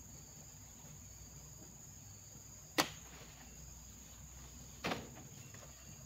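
Two sharp knocks, about two seconds apart, from heavy oil palm fruit bunches being speared with a spiked pole and loaded onto a truck. They sound over a steady high-pitched drone of insects.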